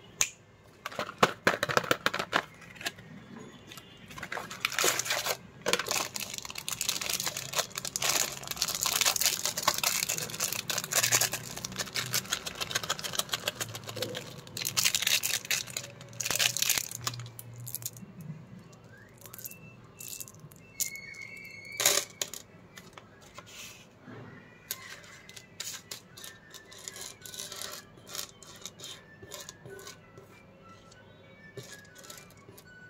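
Candy wrappers crinkling and tearing open, and hard sugar-coated chocolate buttons (Cadbury Gems) clicking and rattling as they spill out and are pushed around on a wooden tabletop. The crinkling and clicking are dense for about the first eighteen seconds and sparser after, with one louder sharp snap about 22 seconds in.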